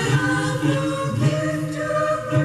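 Christmas choral music from an FM radio broadcast, with several voices singing together over a low accompaniment, played through a small radio's speaker.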